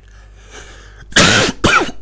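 A man coughing into his fist: two coughs in quick succession starting just over a second in, with another following straight after.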